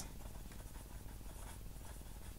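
Faint sound of handwriting on squared paper, a word being written out by hand.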